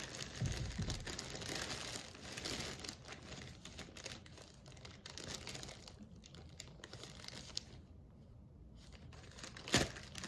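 Packaging crinkling and tearing as a doll is unwrapped by hand, in irregular handfuls that thin out into a quieter stretch late on. A single sharp click near the end is the loudest sound.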